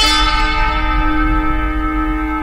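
A bell-like tone struck once, ringing on with several pitches at once and slowly fading.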